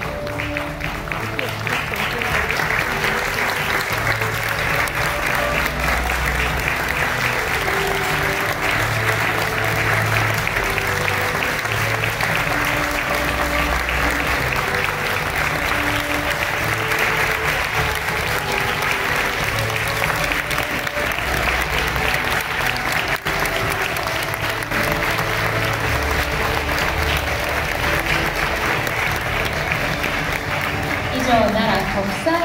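Audience applauding steadily, with background music playing underneath.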